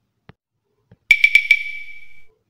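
About a second in, four quick bright strikes, each leaving a single high ringing tone. The tone holds for about a second after the last strike, like a bell or chime.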